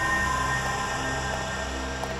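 Suspenseful background music: sustained low drone tones under a dense hissing layer.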